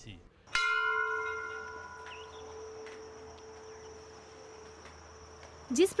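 A single strike of a metal temple bell about half a second in, ringing on with several clear tones and fading away over about five seconds.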